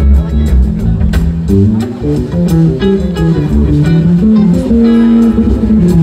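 Live rock band playing an instrumental passage: electric guitar and Greek laouto plucking a melody over bass guitar and drums, with a violin in the mix.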